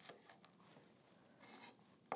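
Near silence with a few faint taps of a chef's knife cutting green pepper strips on a bamboo cutting board, the clearest one about one and a half seconds in.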